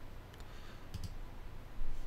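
A few faint computer mouse clicks over low room hiss.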